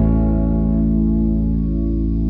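Music: a final held chord of distorted, effects-laden electric guitar ringing out with a slight wavering, slowly fading as the song ends.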